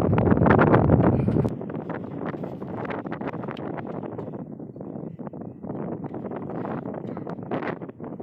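Wind buffeting the microphone, heavy at first and dropping off sharply about a second and a half in, then lighter wind noise with scattered small clicks and knocks.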